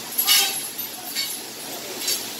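Metal trolleys of an overhead banana cableway rattling along the steel rail, carrying hanging green banana bunches, in short bursts with the loudest just after the start and another about a second in.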